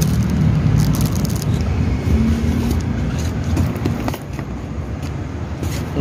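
Clear plastic packaging crinkling in short bursts as bagged cylinder-head parts are handled, over a steady low rumble.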